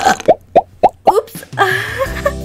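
Comic hiccup sounds: a quick run of about five short pitched pops, each rising in pitch, then a longer, lower drawn-out voiced sound near the end.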